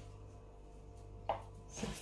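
Hand scraping and gathering cookie dough against the side of a plastic mixing bowl: faint rubbing and scraping over a steady low hum.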